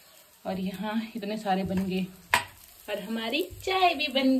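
Chana dal tikkis shallow-frying in oil in a pan, with a faint sizzle beneath a woman's voice. There is one sharp click about halfway through.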